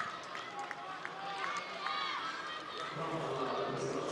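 Football match pitch-side ambience: steady stadium background noise with faint, distant voices and shouts.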